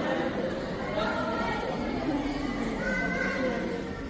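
Indistinct voices of several people talking in a hard-floored hall, with no single clear speaker.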